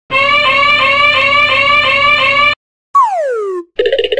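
Fire station alarm bell sound effect ringing in rapid repeating pulses, about three a second, for about two and a half seconds, then cutting off. A whistle falling sharply in pitch follows, then a short burst of noise near the end.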